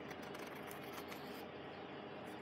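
A pen scratching across paper in several short strokes while a drawing is inked.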